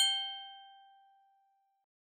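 A single bright chime struck once, ringing with several clear tones and fading away over about a second and a half: a logo sting.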